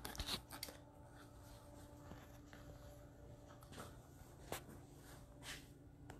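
Near silence: quiet room tone with a faint steady hum and a few small clicks and rustles from the camera being handled.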